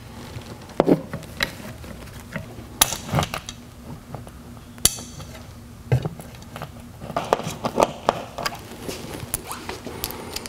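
Metal mounting screws, washers and a metal filter bracket clinking and knocking as the bracket is held to the wall and a washered screw is started by hand: irregular small clicks and knocks.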